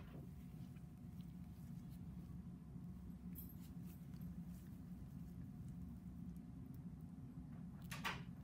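Faint, steady low room hum with a few soft metallic clicks from surgical instruments during a scalp cyst excision. The clicks cluster about three seconds in, with a sharper one near the end.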